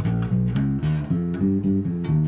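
Bass guitar playing single plucked notes up a scale, about four notes a second. The scale is the altered scale, the seventh mode of melodic minor.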